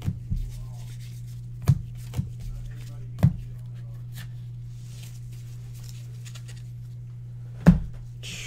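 Trading cards being handled and set down on a desk: five or six short sharp taps spread out, the loudest near the end, over a steady low hum.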